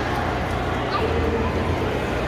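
Chatter of many voices from people eating at nearby tables, with a short drawn-out whine about half a second in.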